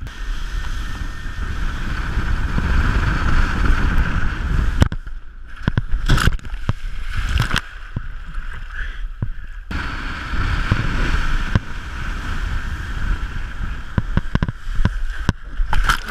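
Wind buffeting a wakeboarder's action-camera microphone over the rush of water and spray as the board carves behind the tow line, broken by sharp splashes. Near the end the rider falls and the camera plunges into the water.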